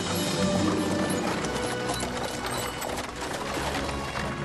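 Background music with the clip-clop of a horse's hooves as it draws a wagon along.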